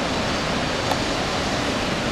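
Steady rushing noise of a waterfall, even and unbroken, with one faint click just under a second in.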